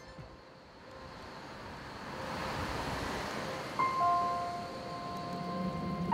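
A soft whoosh of noise swells up from near quiet. About four seconds in, gentle held chime-like notes of background music come in.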